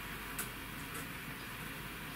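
Quiet room tone: a steady low hiss with one faint click about half a second in.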